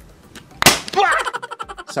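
A sharp, loud bang as a plug is pushed into a wall socket, the crack of an electrical short circuit at the outlet. A man's startled exclamation follows straight after.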